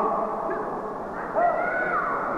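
Shouted human voices: drawn-out calls, with a louder rising shout about a second and a half in.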